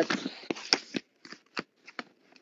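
A string of light, irregular clicks and short rustles close to the microphone, about a dozen in two seconds, thinning out after the first second.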